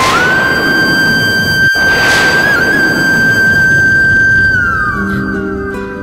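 Dramatic background-score sting: one high held tone over a dense rushing swell, sliding down about four and a half seconds in. Plucked-string notes begin near the end.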